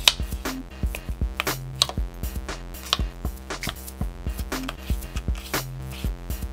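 Background music with a steady electronic beat and a sustained bass line.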